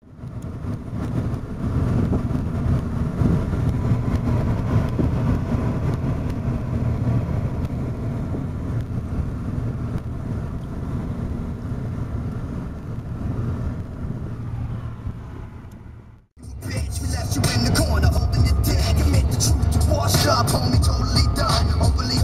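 Road noise from inside a moving car: a steady low rumble. It breaks off about sixteen seconds in and comes back louder, with more hiss.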